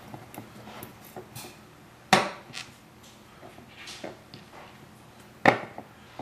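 Bowflex SelectTech 552 dumbbell parts being handled and fitted during reassembly: small clicks and rattles, with two sharp knocks, one about two seconds in and one near the end.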